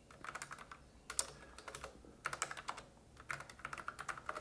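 Typing on a computer keyboard: soft key clicks in several quick bursts with short pauses between, as a word is typed out.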